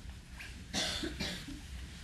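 A person in a small seated audience coughing twice in quick succession, a little under a second in.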